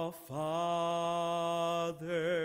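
A man singing solo with no other instrument heard: after a short breath he holds one long note with vibrato, breaking off just before the end.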